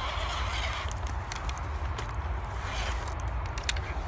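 Snow crunching and scraping in uneven bursts, with scattered sharp clicks, as a small RC crawler on a nearly flat battery pushes into the snow and packs its front tyres with it, close to boots stepping in the snow.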